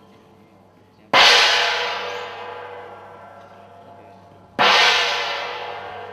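Hand-held gong struck twice with a mallet, about a second in and again about three and a half seconds later, each stroke ringing bright and dying away slowly.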